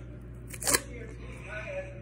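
A single sharp crackle of packaging about three-quarters of a second in, as a SpongeBob push-up ice pop is opened by hand.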